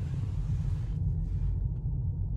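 Steady low road and tyre rumble inside the cabin of an electric Tesla Model 3 rolling slowly at about 10 mph, with no engine note. A faint hiss above it fades about halfway through.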